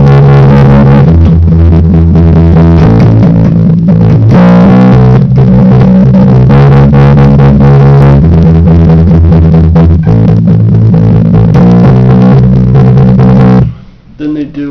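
Electric bass guitar playing a punk rock bassline in E major, loud and steady, its notes changing every second or two; it stops suddenly near the end.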